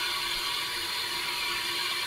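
Penberthy Model 328AA live-steam injector running with a steady, even hiss as it forces water into the boiler. The boiler's water level is rising, a sign the injector is working.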